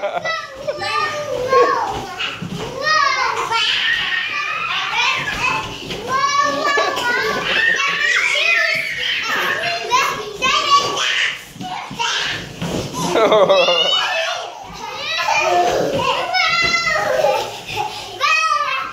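Several young children playing together, chattering and calling out in high voices throughout.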